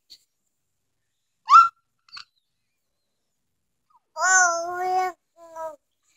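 A toddler's wordless vocalizations: a short high squeal about a second and a half in, then a longer wavering babble around four seconds in, followed by a brief sound, with silence in between.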